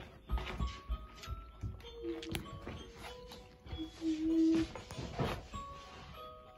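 Simple electronic Christmas-decoration melody of plain held notes, loudest about two-thirds of the way through, with scattered light knocks.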